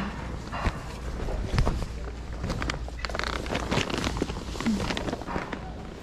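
Denim jeans being handled and sorted through in a pile of clothes: cloth rustling and shuffling close by, with scattered small knocks and clicks.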